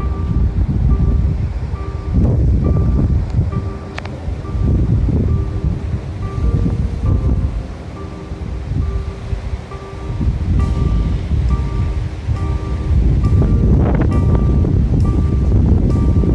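Wind buffeting the phone's microphone in gusts, heavy low rumbling that eases for a few seconds midway, over background music with a short high note repeating at an even pace.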